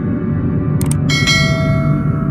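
Sound effects of an animated subscribe button over a low, droning dark-ambient music bed: a quick double mouse click a little under a second in, then a bright bell chime that rings out and slowly fades as the notification bell is pressed.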